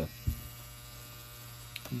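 Tattoo machine running with a steady low hum, with one or two faint ticks.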